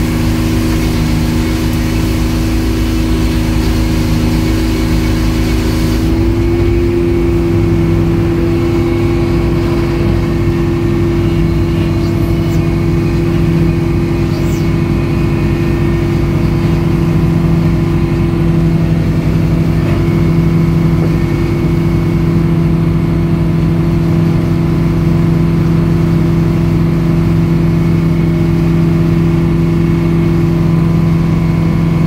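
Edmiston hydraulic circular sawmill cutting a log. The blade's high cutting hiss stops sharply about six seconds in as the cut ends, and the mill's engine and free-spinning blade run on steadily after that.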